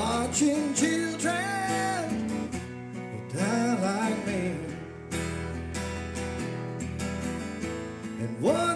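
A man singing a country song to his own strummed acoustic guitar, heard live through the room. The sung phrases come in about a second in and again around three to five seconds, with the guitar strumming steadily under and between them.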